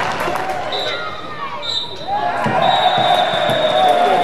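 Referee's whistle blown in long steady blasts: one for about a second, a brief pip, then a longer blast near the end, over crowd noise and shouting voices.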